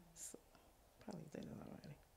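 Very quiet, murmured speech, nearly a whisper, with a short breathy hiss a moment in.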